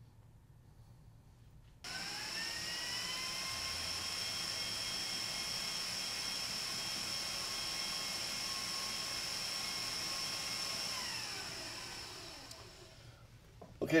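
An electric kitchen appliance motor switches on suddenly about two seconds in, its whine rising in pitch as it spins up, then runs steadily with a high whine before slowing and fading out near the end.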